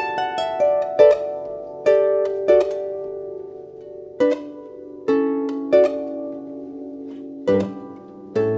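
Salvi Echo electroacoustic harp played solo: a quick run of plucked notes, then chords struck about once a second and left ringing as they fade.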